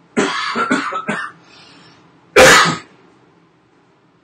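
A man off camera clearing his throat with a few quick coughs, then one much louder single cough about two and a half seconds in.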